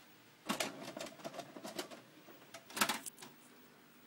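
Quick runs of sharp clicks and clatter from hands handling equipment, in two bursts: a longer one about half a second in and a shorter, louder one about three seconds in.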